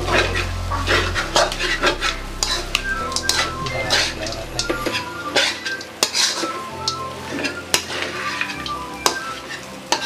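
Metal spatula scraping and clinking against a wok in repeated, irregular strokes as chopped pork sisig is stirred while it fries, the meat sizzling underneath.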